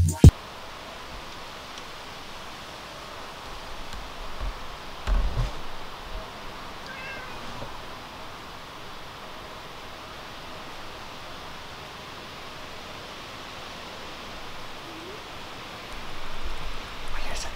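Domestic cat meowing faintly once, about seven seconds in, over a steady quiet background hiss; a dull low thump comes a couple of seconds before.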